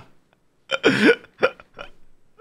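A man laughing: after a brief quiet moment, one loud sharp laugh about two-thirds of a second in, then two short laugh bursts.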